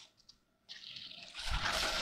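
Squash leaves and vines rustling as a hand pushes through them close to the microphone. Silent at first, a faint rustle starts a little under a second in and grows louder.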